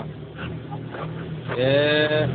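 A singing voice: after a quieter stretch, a long sung note starts about one and a half seconds in, over a steady low hum.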